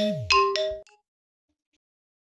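imo app incoming-call ringtone: a melodic phrase of chime-like notes over a low swooping tone. It cuts off just under a second in, as the call is answered, and silence follows.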